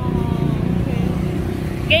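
Busy road traffic: a steady low rumble of cars passing without a break.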